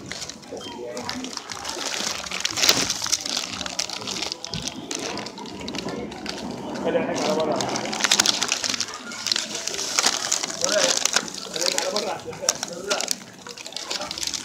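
Plastic packaging of hanging phone cases crinkling and rustling as they are handled, in irregular crackles, with voices talking in the background.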